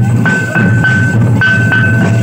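Live Santhali folk music: large barrel drums beaten with sticks in a fast steady rhythm, over a high held tone that repeats in short phrases.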